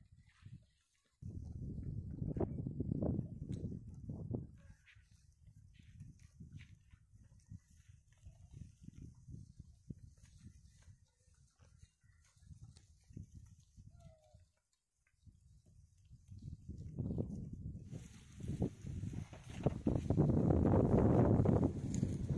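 A herd of Kankrej cattle walking and grazing through dry scrub, heard under uneven rumbling gusts of wind on the microphone. The gusts are loudest from about a second in to four seconds, and again near the end, where a hiss joins them.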